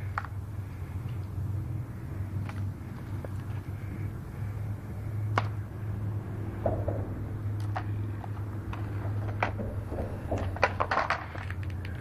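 A steady low hum under scattered sharp clicks and rattles of plastic syringes and litter being handled on dirt, with a quick run of them near the end.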